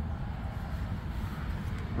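Outdoor background noise: a steady low rumble with the faint sound of road traffic.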